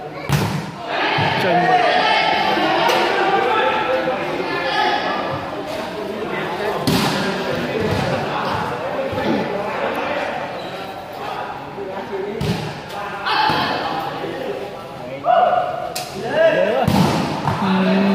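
Men's voices talking and calling out over a volleyball rally, with several sharp thuds of the ball being struck during play.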